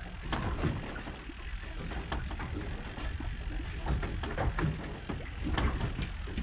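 Low, steady rumble of wind and water around a small fishing boat at sea, with a few faint scattered knocks.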